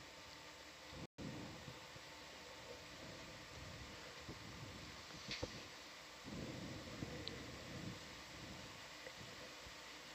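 Faint room tone with a low steady hiss and a few faint clicks. The sound cuts out completely for an instant about a second in, and a slightly louder low murmur comes up a little past the middle.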